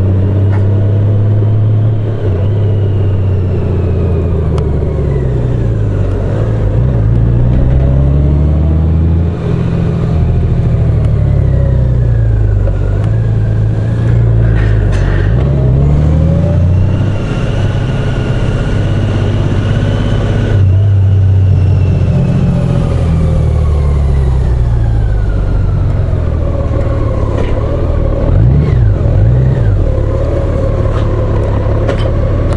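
Touring motorcycle engine running under way, its pitch rising and falling over and over as the bike speeds up, slows and changes gear, over a steady rush of road and wind noise.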